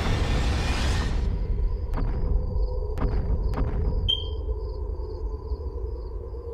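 Cartoon soundtrack and sound design: a noisy whoosh that dies away about a second in, then a steady low rumble with a few faint sharp ticks and a thin high tone.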